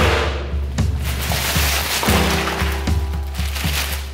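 Background music with a steady beat and held notes, opening with a loud crash that fades over about a second.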